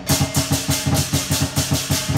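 Lion dance percussion: a big lion drum beaten in a fast, steady rhythm of about six or seven strokes a second, with clashing cymbals on the beat.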